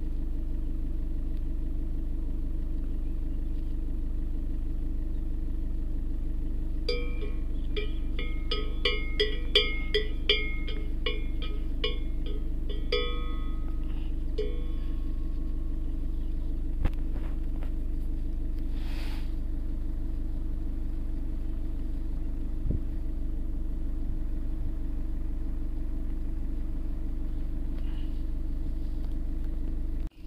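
A car engine idling steadily. Partway through, a cow's bell clanks in a quick irregular run of ringing strikes for about six seconds.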